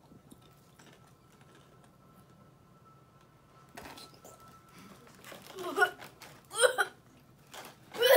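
A boy's few short strained voice sounds in the second half, after a quiet stretch: a pained reaction to the burn of a very hot chilli-flavoured chip.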